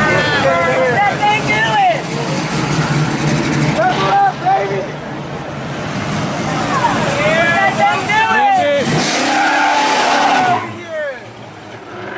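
Classic muscle car engines revving and accelerating past one after another, their pitch rising and falling with each rev, with spectators' voices mixed in. The engine sound is loud and drops away near the end.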